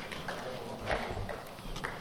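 Faint scattered knocks and shuffling of people moving about in a lecture hall after the session closes, with a faint murmur of voices; the clearest knocks come about a second in and near the end.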